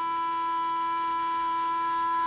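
A new, not-yet-run-in JK Hawk 7 FK-size slot car motor running at about 20,000 RPM on 5 volts during its warm-up. It makes a steady, even whine, its speed holding stable.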